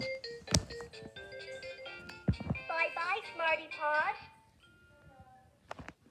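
VTech Lil' SmartTop toy laptop playing its shut-down jingle, a quick run of short electronic notes, then a brief bit of its voice as it powers off. A few sharp clicks come from handling the toy.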